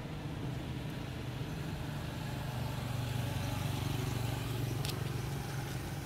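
Low, steady engine hum, like a motor vehicle running nearby, growing louder in the middle and easing off near the end, with a short click about five seconds in.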